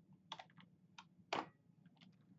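Faint keystrokes on a computer keyboard: about five separate key presses, spaced irregularly, with one louder press a little past the middle.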